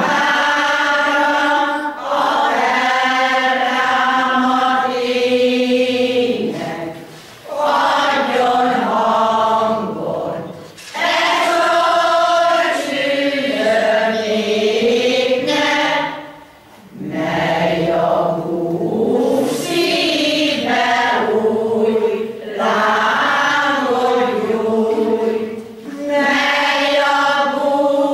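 Amateur pensioners' choir of mostly women singing a Hungarian folk song unaccompanied, in long phrases with short breath pauses between them.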